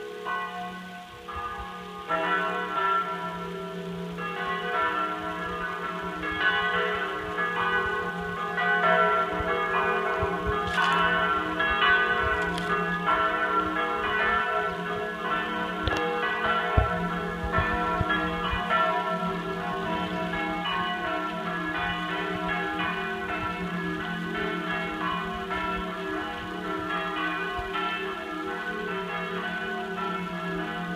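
Church bells ringing: several bells struck over and over in a continuous, overlapping peal that swells about two seconds in.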